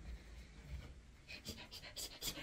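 Quiet room with faint breathing close to the microphone and a few short, soft brushing noises in the second half.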